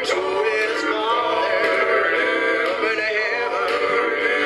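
Music: several voices singing together with a strong vibrato, over steadier held notes.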